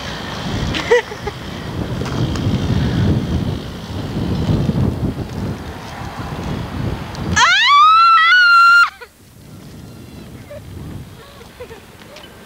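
Heavy rumbling wind and handling noise on a camcorder microphone as the camera moves close over a person on the ground. About seven seconds in, a loud high-pitched squeal wavers upward, holds for about a second and a half, then cuts off suddenly, leaving quieter outdoor ambience.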